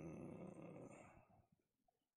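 A man's low murmur trailing off into a faint, rough fade within about the first second, then near silence.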